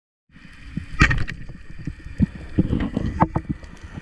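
Muffled underwater noise heard through a camera housing, with a sharp crack about a second in: a speargun firing at a fish. Scattered knocks and clicks follow.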